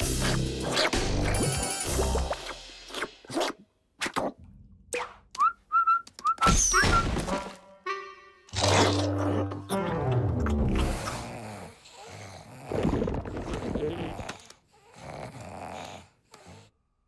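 Cartoon background music with comic slapstick sound effects, including short rising whistle-like glides about five to seven seconds in.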